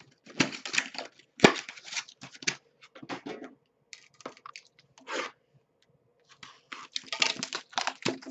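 Cardboard trading-card box and packaging being handled and torn open: irregular bursts of tearing and scraping, with a sharp knock about a second and a half in and a short pause a little before the end.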